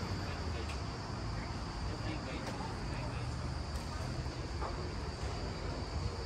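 Outdoor street ambience: a steady high-pitched insect drone over low rumbling background noise, with faint voices of passers-by.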